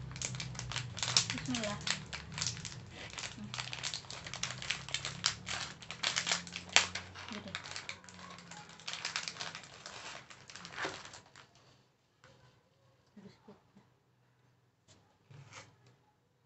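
Plastic snack wrapper crinkling and tearing as it is opened by hand: dense, rapid crackling for about eleven seconds, then only a few faint rustles.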